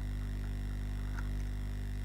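Steady low electrical mains hum with a stack of even overtones, unchanging throughout.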